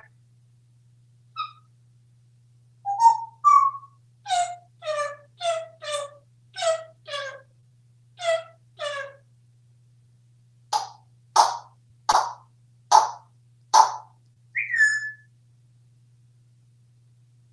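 African grey parrot vocalizing in a string of short, repeated, mostly paired calls, then five harsher, noisier calls, ending with a short falling whistle.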